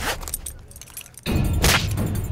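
Fight sound effects from an action film. A sharp hit opens it, followed by a brief lull. Then a low rumble comes back under another sharp strike near the end, with a metallic jangle in the mix.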